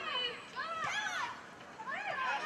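Young players' voices shouting and calling out on a football pitch during play: a call just at the start and another, high and drawn out, about a second in.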